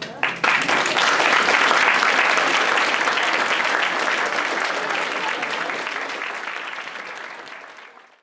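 Theatre audience applauding: a few first claps, then full, dense applause that slowly dies away toward the end.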